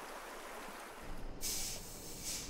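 Faint trickle of shallow water running over stones. A brighter hiss joins it a little past halfway and stops shortly before the end.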